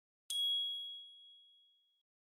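A single bright chime, the KOCOWA logo sting, struck about a third of a second in and ringing out on one clear high note that fades away over about a second and a half.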